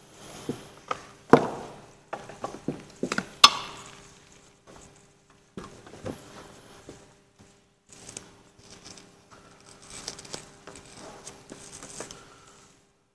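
Handling noises from setting up pump equipment on a bench: irregular knocks and clicks, two sharper knocks in the first few seconds, then softer rustling and small clicks as the control box, cables and hose are moved.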